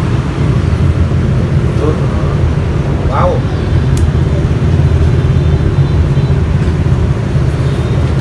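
A steady low rumble of background noise, with a short voice about three seconds in and a single click at four seconds.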